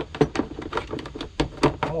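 Plastic group 24 battery box lid being handled and fitted onto its case: a quick, irregular series of plastic clicks and knocks.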